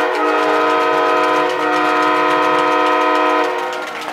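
Arena goal horn sounding for a home goal: one loud, steady chord of several tones held that fades away about three and a half seconds in.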